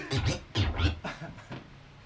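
DJ scratching a vinyl record on a turntable: a quick run of back-and-forth scratches, pitch sweeping up and down, for about the first second, then tailing off quieter.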